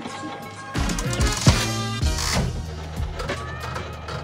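Music with several sharp mechanical clunks, the loudest about a second and a half in, from an old mechanical one-armed bandit slot machine being worked and its reels spinning.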